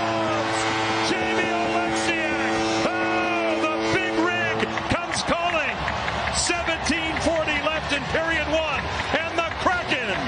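Ice hockey arena goal horn sounding one steady low note for about five seconds, signalling a home goal, over a cheering crowd; it cuts off and a voice carries on over the crowd noise.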